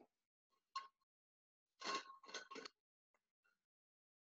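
Short knocks and clinks of objects being handled close to the microphone: one about three quarters of a second in, then a quick run of three about two seconds in.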